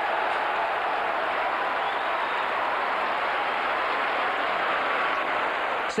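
Football crowd cheering a goal: a steady, even wash of many voices that holds level and ends abruptly just before the six-second mark.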